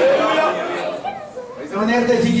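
A man preaching into a handheld microphone, with a short pause in the middle before he goes on.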